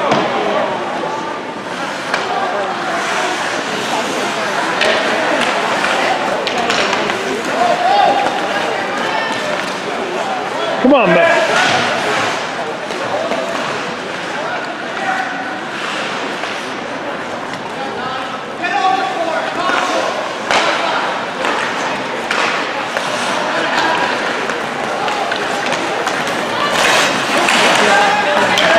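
Ice hockey game in an indoor rink: spectators' voices and chatter throughout, with occasional sharp knocks from play on the ice, the loudest about eleven seconds in.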